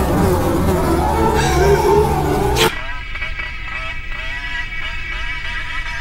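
Cartoon buzzing of a fly, its pitch wavering up and down. A dense, louder mix of sound effects and music cuts off abruptly about two and a half seconds in, leaving the thinner buzz.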